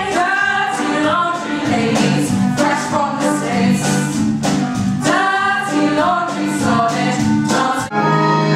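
A stage-musical chorus, mostly young women's voices, singing together over a steady beat.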